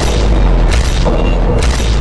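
Dramatic film score with a deep, sustained low boom and two sharp hits about a second apart.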